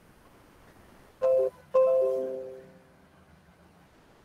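Video-call notification chime of two quick bell-like notes, the second ringing out and fading over about a second. It signals a participant joining the call.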